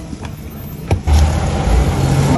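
A sharp click about a second in, then loud, low city-street traffic rumble with hiss.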